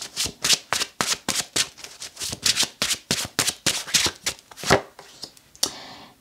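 A tarot deck being shuffled by hand: a quick, even run of short card-on-card slaps, about five a second, with one louder slap before the shuffling stops near the end.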